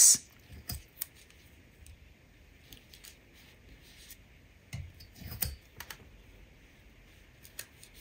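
Washi tape strips being handled and pressed down onto cardstock strips: scattered light clicks and crinkles, with a short cluster of louder tape and paper noise about five seconds in.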